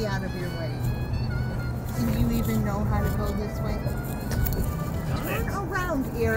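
Steady road noise inside a moving car, with muffled adult voices and music in the background. The voices are the parents arguing over which way to go.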